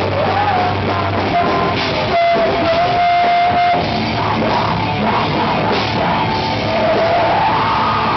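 Live rock band playing loud: electric guitars, bass and drum kit with a vocalist singing into a microphone. A long held high note comes in about two seconds in, while the low bass drops out for most of the stretch.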